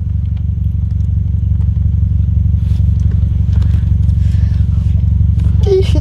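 Wind buffeting the microphone outdoors: a loud, steady low rumble, with faint voices in the background.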